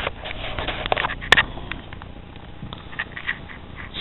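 Handling noise from a handheld camera being moved: scattered rustling, scraping and small clicks, with one sharp click about a second and a half in.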